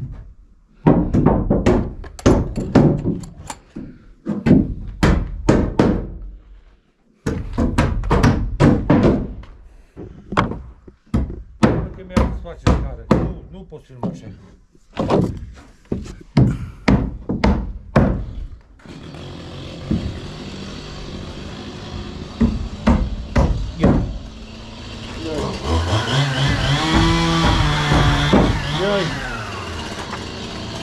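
A rapid series of knocks, several a second in bursts with brief pauses, through most of the first two-thirds. Then a steadier background noise takes over, with voices over it near the end.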